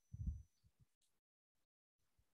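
Near silence: room tone, with one brief low thump just after the start.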